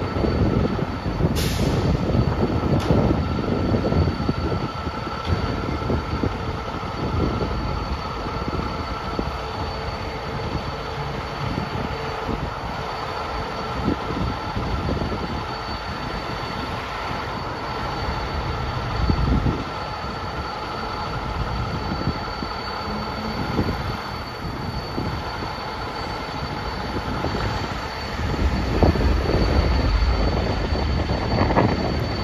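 A fire engine's diesel engine running in the station bay: a steady rumble with a thin, constant high whine over it. There is a single sharp click about a second and a half in.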